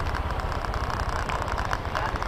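A vehicle engine runs steadily, a low rumble heard from on board the moving vehicle.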